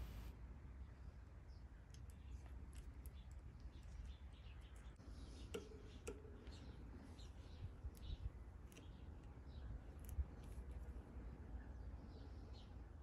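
Faint, scattered light clicks and ticks from handling a bicycle brake cable and its cable end, a few of them a bit louder between about five and ten seconds in, over a low room hum.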